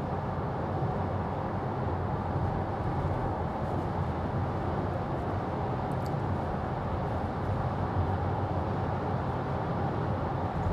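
Steady road and wind noise inside the cabin of a Tesla Model 3 Performance cruising at about 65 mph on 20-inch wheels. It is an electric car, so there is only tyre roar and wind rush with no engine note.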